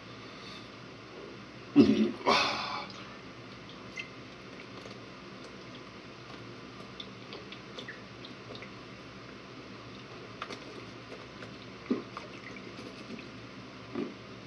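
A man chugging malt liquor from a 40 oz glass bottle: quiet gulping and swallowing with faint liquid clicks. There is a brief loud sound about two seconds in, before the long drink.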